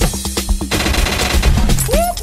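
Machine-gun-fire sound effect dropped over the music at a track change in a DJ's Afrobeat mix: a fast run of shots in the first part, then a hiss-like sweep, with the next track's beat coming in near the end.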